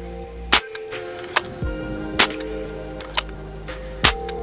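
Evanix AR6K .22 PCP air rifle with a moderator fitted, fired repeatedly in its hammer-fired action: three sharp shots about a second and a half to two seconds apart, with fainter clicks between them. Background music plays throughout.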